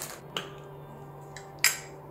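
A few light clicks and taps from chopsticks in a plastic sleeve being handled, the sharpest about one and a half seconds in, over a faint steady hum.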